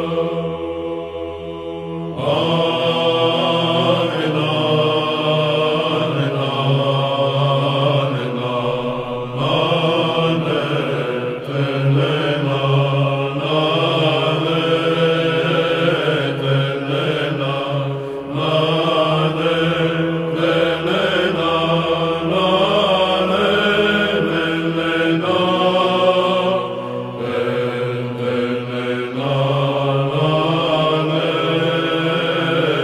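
Byzantine chant: a psaltic choir sings a melismatic kalophonic heirmos in the third tone, drawing the melody out over long vowels above a steady held drone (ison). For about the first two seconds the drone carries on while the melody is faint, and then the melody comes back in full.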